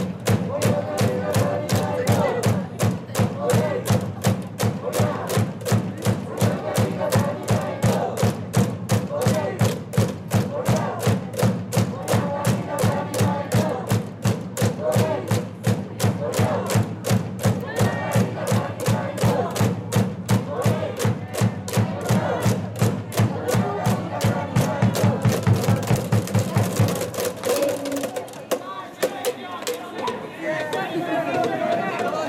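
A baseball cheering section of parents in the stands chants a cheer in unison over a fast, steady beat of struck strokes, about three a second. The beat and chanting stop shortly before the end.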